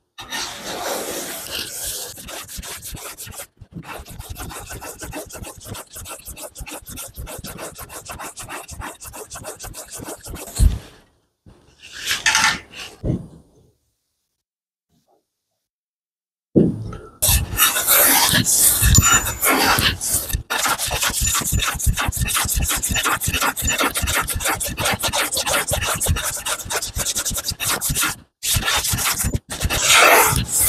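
Small hand plane taking thin shavings off a soft red cedar soundboard in quick repeated strokes. The strokes stop for a few seconds about halfway through, then resume.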